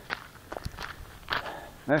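Footsteps on a trail: a run of short, uneven crunching steps.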